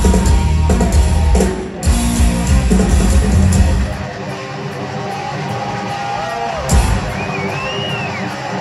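A heavy metal band playing live, heard through the concert PA. Distorted electric guitars, bass and drum kit play together for about four seconds, then the bass and drums drop away, leaving guitar with bent notes and a single loud hit about three-quarters of the way through.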